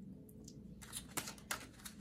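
Tarot cards being handled and laid on a tabletop: a few soft taps and slides in the second half, over a faint steady room hum.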